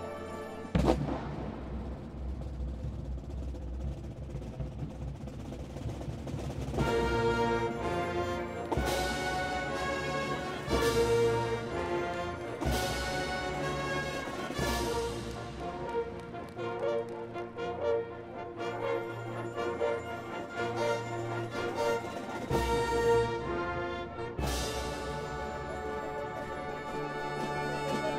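Full high school marching band (brass, sousaphones, woodwinds and drums) playing a loud passage. A sharp percussion hit comes about a second in, then sustained chords punctuated by accented hits roughly every two seconds.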